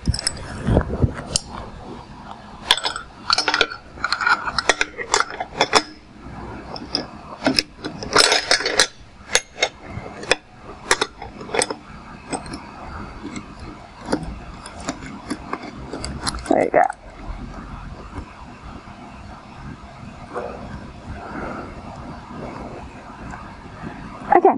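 Metal clinks and clicks of the stainless-steel fittings on a Soxhlet extraction column as the condenser is fitted and tightened onto it with its seals. The clicks are irregular, thick in the first half and sparser later.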